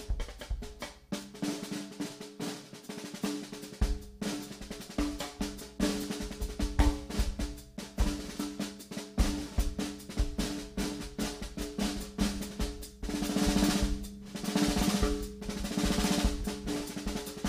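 Drum kit played with sticks in a continuous, busy pattern of snare, tom and bass drum strokes, growing denser and brighter from about thirteen seconds in.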